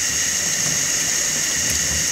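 Kitchen sink faucet running a steady stream of cold water onto a silk screen, rinsing out the screen-printing emulsion.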